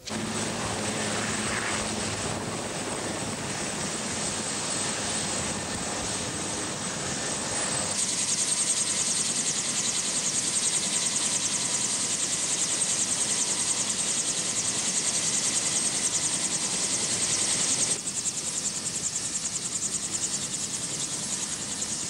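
Army helicopters running loud and steady: a high turbine whine over rapid rotor chop. The sound steps up louder about eight seconds in and drops back a few seconds before the end.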